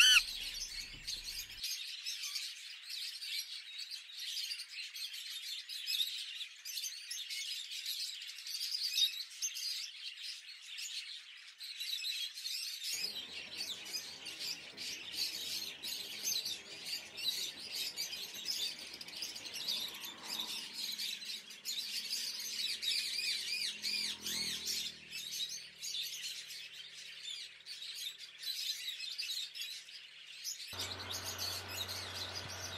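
A chorus of many small birds chirping and twittering continuously in high, quick notes. About halfway through, a faint low hum joins underneath.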